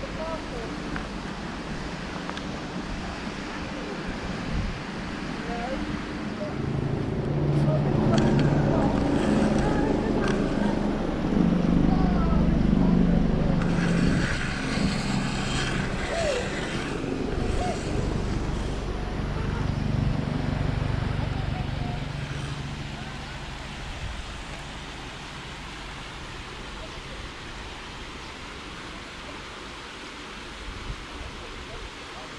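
A motor vehicle passing close by: its engine builds up, is loudest in the middle with a burst of tyre and road hiss, then fades away, over steady outdoor wind noise.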